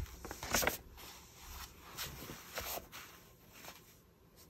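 Soft, irregular rustling and crinkling of a paper tissue and journal paper as ink that has bled through the page is blotted up, with a page being turned.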